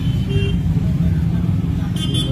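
Steady low rumble of road traffic in the street.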